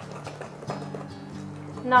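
Soft background music with sustained low tones, over a few light, irregular taps of a spatula beating cake batter in a glass bowl.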